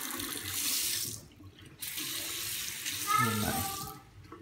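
Water running from a chrome bathroom faucet into a sink. It stops about a second in, starts again about half a second later, and stops near the end.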